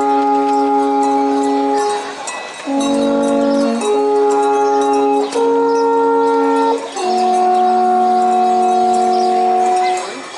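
A pair of wooden alphorns playing a slow tune of long held notes, with brief pauses for breath between phrases; the last note is held for about three seconds.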